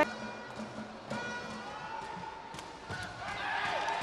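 Low background of crowd noise and faint music in a sports hall, with a few sharp knocks of a sepak takraw ball being kicked as the serve and rally begin.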